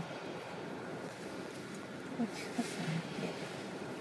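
Steady low hum inside a stationary car, with faint rustling of clothing and a few soft murmurs about halfway through.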